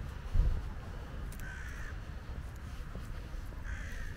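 A crow cawing twice, once about a second and a half in and again near the end, over a steady low rumble. A short thump just under half a second in is the loudest sound.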